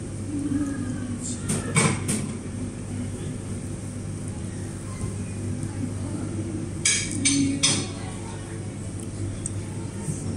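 Restaurant dining-room ambience: a steady low hum under faint background conversation, with two brief clusters of sharp clinks from tableware, about two seconds in and again about seven seconds in.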